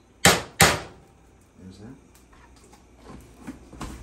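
A metal spoon knocked twice against the rim of a frying pan: two sharp clinks about a third of a second apart near the start.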